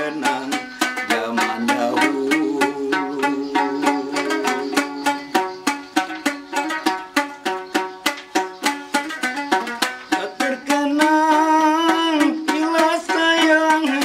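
Dambus, a traditional Malay wooden lute, strummed in a quick, even run of plucked strokes as an instrumental passage. About eleven seconds in, a man's singing voice joins over the strumming.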